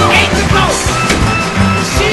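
A theatre band playing an instrumental dance section of a musical number, with a steady bass beat and sliding melodic lines over it.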